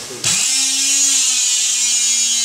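The electric motor of a RUNSUN RB20 handheld single-phase rebar bender starts abruptly about a quarter second in and runs with a steady high whine, driving the bending head round against a steel rebar.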